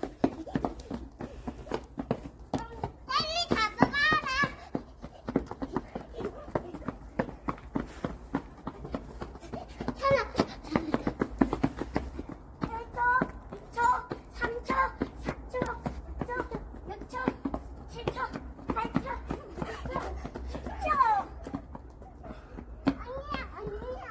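Young children playing: high-pitched squeals and wordless shouts, loudest a few seconds in and again around the middle, over frequent short taps throughout.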